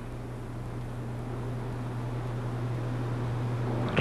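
A steady low hum with an even hiss over it, growing slightly louder.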